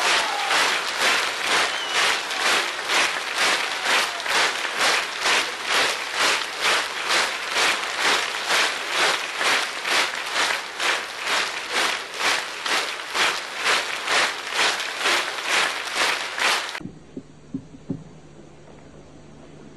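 Theatre audience clapping in unison, a steady rhythmic applause of about two claps a second, cut off abruptly near the end.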